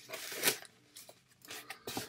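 Cardboard shipping box being handled and opened: a loud rustling scrape of cardboard in the first half second, then quieter rubbing and a few small clicks.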